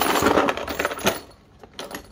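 Plastic ratchet-set case being handled, its metal sockets and bits rattling inside it in a dense clatter for about the first second, followed by a few light clicks near the end.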